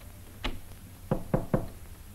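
Knocking on a wooden panelled door: one knock about half a second in, then three quick knocks a second in.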